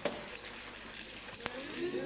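Theatre audience murmuring and rustling while the curtain is closed, with two sharp knocks, one at the start and one about a second and a half in. Voices begin to rise near the end.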